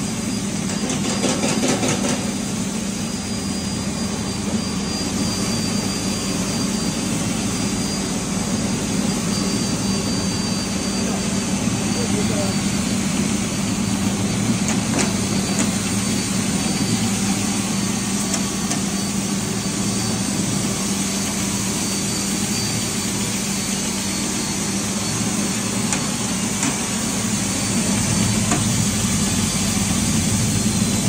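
Broken-wheat (dalia) machine with its shaking sieve running steadily: a continuous motor hum with the sieve clattering, a rapid rattle in the first two seconds.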